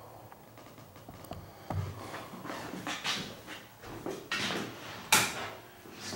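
Knocks and rustling handling noise, then a sharp click a little after five seconds in as a ceiling fan with a light kit is switched on.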